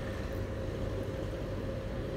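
Steady low rumble of city street traffic, with a faint constant tone above it.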